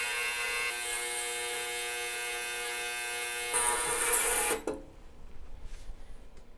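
Ultrasonic cleaner running with an iPhone logic board held in its bath of cleaning solution to loosen flux: a steady buzzing hum with a high hiss. It gets louder about three and a half seconds in and cuts off suddenly about a second later, leaving only faint splashes.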